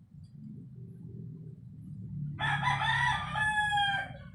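A rooster crowing once, starting a little past halfway and lasting about a second and a half, its pitch dropping at the end.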